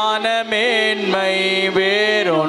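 A man singing a Tamil Christian worship song into a microphone, with long held notes that slide between pitches, over a steady low sustained note.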